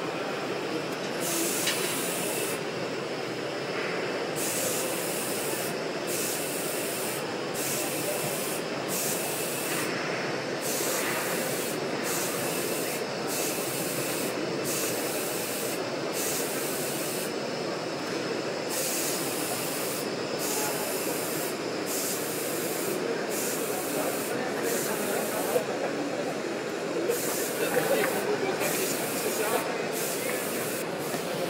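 Marchesini packaging machine running: a steady mechanical clatter of its conveyors and transfer arms, with a hiss that comes and goes about every second and a half.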